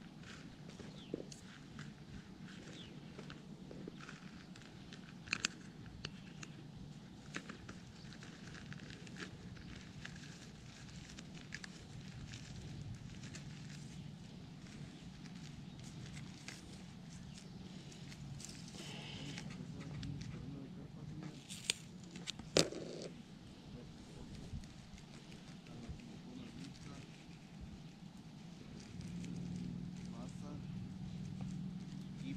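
Hands mixing and kneading moist corn carp bait, with soft crackling handling noises and a few sharp clicks, two close together late on, over a low steady hum.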